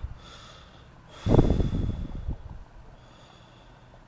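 A person's single loud breath out close to the microphone, starting about a second in and fading over about a second, over faint steady background hiss.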